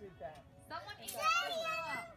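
Young children's high-pitched voices, starting less than a second in, with no clear words.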